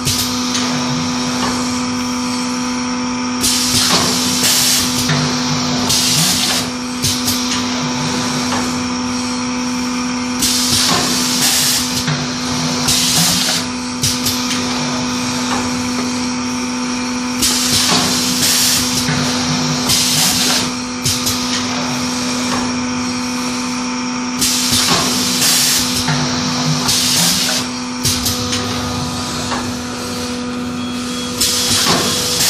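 Pneumatic paper cake mould forming machine running: a steady electrical hum under sharp hisses of compressed air from its cylinders. The hisses come in pairs, a pair about every seven seconds, as each forming cycle is worked.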